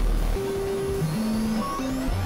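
Experimental electronic synthesizer music over a dense, noisy wash. Held tones step between pitches, a deep bass drone cuts off about half a second in, and a high sweep rises slowly in pitch.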